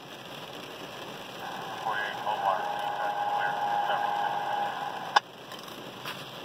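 Radio scanner static hissing, with a faint steady tone in the middle. A sharp click about five seconds in cuts it off.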